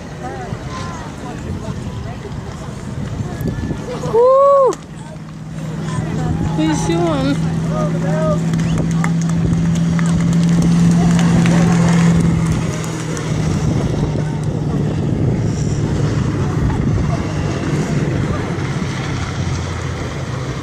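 Race car engine running as the car comes round the track past the fence, a steady low drone that grows louder to a peak around ten to twelve seconds in and then eases off. Spectators' voices are heard nearby, with one short, loud call about four seconds in.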